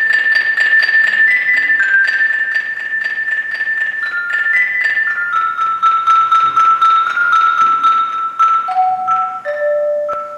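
Mallet percussion playing a rapid tremolo of repeated strokes, about five a second, on high ringing notes that shift in pitch and then step downward. Near the end two lower notes sound and ring on, fading as the passage closes.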